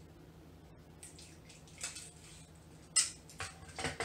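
A desk tape dispenser being handled to take off a piece of tape: faint rustles and scrapes, then one sharp snap about three seconds in.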